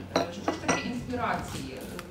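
Three sharp clinks of hard objects within the first second, the loudest sounds here, over a woman's voice.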